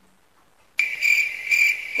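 A loud, high-pitched trill that starts suddenly about a second in, pulses about three times and cuts off sharply: an edited-in sound effect.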